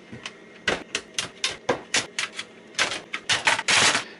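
A run of irregular clicks and knocks, then a louder, denser clatter near the end: a Commodore 64 motherboard and its shield sheet being handled and lifted out of the plastic breadbin case.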